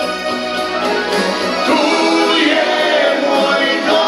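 A pop song performed with a singing voice over instrumental accompaniment, the voice wavering on held notes.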